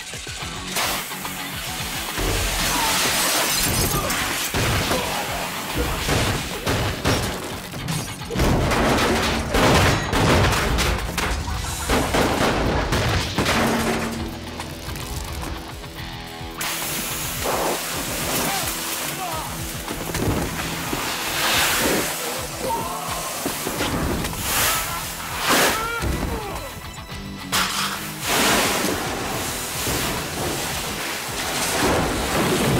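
Action-film fight soundtrack: a music score under repeated hits and crashes, with glass shattering and wordless voices.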